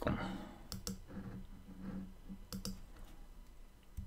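Two computer mouse clicks about two seconds apart, each a quick press-and-release pair, as word tiles are picked on screen.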